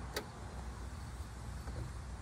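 Car trunk lid unlatching with one sharp click just after the start, then a steady low rumble.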